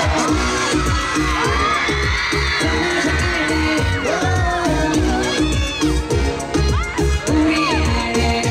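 K-pop dance track playing loud over a concert sound system, with a steady thumping bass beat and gliding synth and vocal lines above it.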